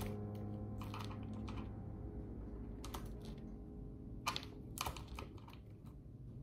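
Typing on a laptop keyboard: short irregular runs of key clicks with pauses between them.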